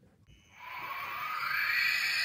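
Small fan and air pump of a Magic Mixies crystal ball's misting unit starting up, as the mechanism is test-run after reassembly: a whirring hiss that comes in about half a second in, with a whine rising slowly in pitch as the motor spins up.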